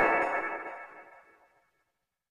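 Tail of a chime-like electronic jingle layered in several pitch-shifted copies, the 'G Major' effect, ringing out and fading away to silence about a second and a half in.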